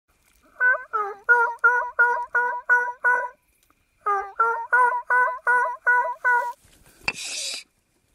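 Turkey yelps made by a hunter calling turkeys: two even runs of about eight yelps, roughly three a second, with a short pause between. A sharp click and a brief hiss follow near the end.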